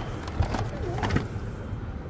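Steady low traffic rumble with a few light knocks from toys being handled in a cardboard box, and a short wavering squeak just under a second in.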